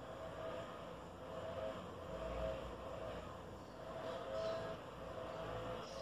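Quiet room with a faint low rumble and a faint humming drone that comes and goes.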